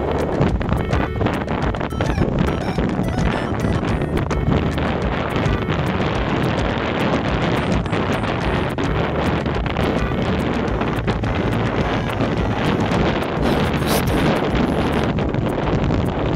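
Steady rush of wind buffeting the camera's microphone as the bike moves along the road, with frequent small clicks and rattles.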